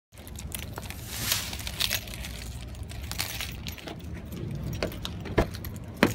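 A bunch of car keys jangling in hand, with scattered light clicks over a low rumble; one sharp click near the end.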